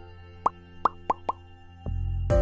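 Four short pop sound effects in quick succession from an on-screen subscribe-button animation, over steady background music that gets louder near the end.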